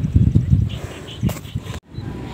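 Uneven low rumble of the rifle being handled on aim, then a single sharp crack a little past halfway: the rifle shot at the mandar.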